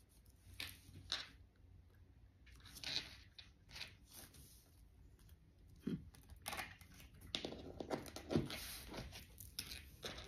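Tarot cards handled on a wooden table: cards slid and set down, then the deck picked up and shuffled, a run of faint short rustles and swishes that grows busier in the second half.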